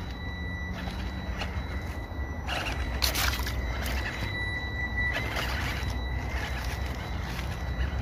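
Small brushed electric motor and gearbox of a 1/18-scale RC crawler truck driving in short throttle pulls up a wet, leafy slope, its tyres scrabbling over leaves and loose slate. The noise grows louder about three seconds in and again about five seconds in.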